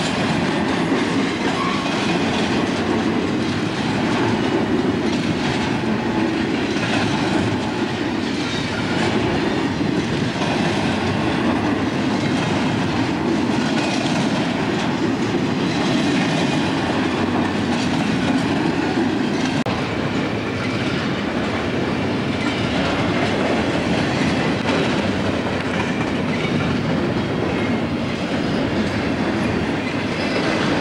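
A freight train's cars rolling past close by: a steady, loud rumble of steel wheels on the rails, with repeated clickety-clack of the wheels running over rail joints.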